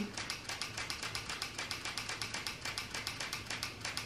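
A quick, even run of light clicks or taps, roughly ten a second.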